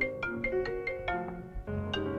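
Mobile phone playing a marimba-style ringtone or alarm: a quick, repeating melody of short mallet-like notes, about four or five a second, with a brief dip about one and a half seconds in.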